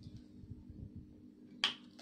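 A single short, sharp click about a second and a half in, over quiet room tone with a faint steady hum.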